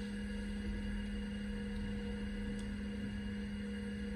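Steady hum of a running Apple Lisa computer: one constant low tone with a weaker higher one over a faint hiss.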